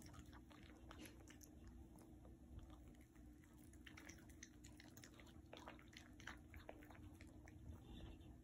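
A small dog eating soft ground food from a plate: faint, scattered chewing and smacking mouth clicks.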